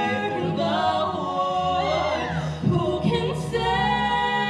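Two singers performing a musical-theatre duet, holding long sung notes that glide up and down in pitch.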